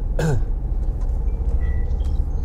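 Steady low engine and road rumble inside a moving car's cabin, with a person briefly clearing their throat just after the start.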